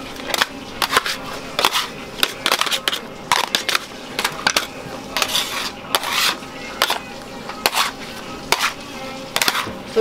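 Steel candy bars and a metal scraper clacking and scraping on a marble slab as a hot candy batch is pushed in and folded. The sharp knocks come irregularly, several a second at times, with pauses between.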